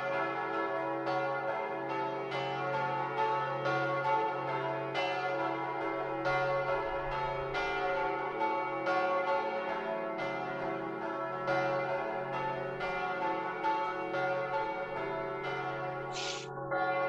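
Church bells ringing: several bells struck one after another in steady succession, each stroke ringing on into the next.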